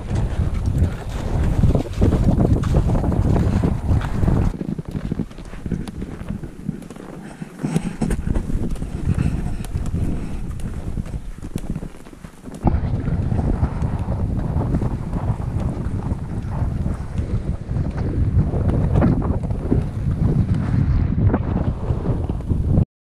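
Wind blowing across the microphone of an action camera: a loud, low, steady noise that dips briefly about halfway through.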